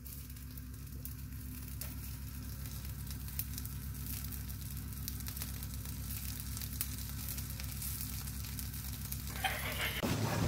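Sausages sizzling in a frying pan, with a steady hiss peppered with small pops and crackles over a low steady hum. The sizzle stops shortly before the end.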